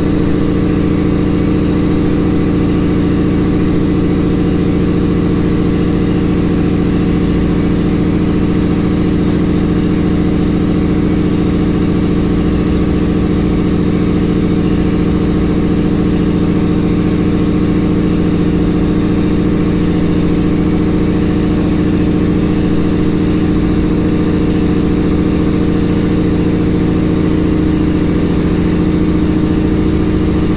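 A vehicle engine running at a constant speed, a steady drone that does not change.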